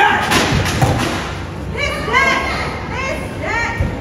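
Children's voices shouting a quick run of short, high-pitched cries that rise and fall, in a large, echoing hall. About half a second in there is a brief burst of noise.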